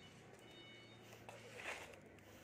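Near silence: faint room tone with a low steady hum and a brief soft rustle near the end.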